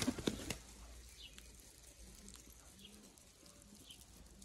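Baku and Iranian pigeons: a brief flurry of wing flaps in the first half second, then quieter, with a few soft low coos.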